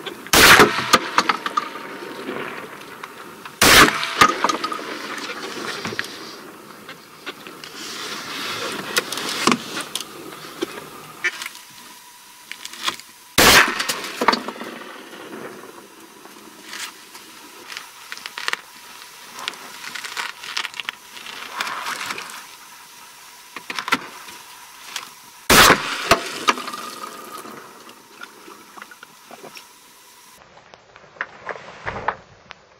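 Shotgun firing: four loud shots several seconds apart, the first just after the start and the last about four seconds before the end.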